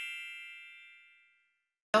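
A bell-like chime rings out, struck just before and dying away smoothly until it fades out a little over a second in.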